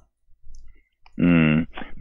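A second of near silence with faint clicks on a telephone line. Then, about a second in, a man's voice comes through the phone, holding a drawn-out syllable before he speaks.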